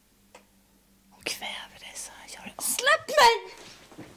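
A person whispering, starting a little over a second in, then a louder spoken cry about three seconds in.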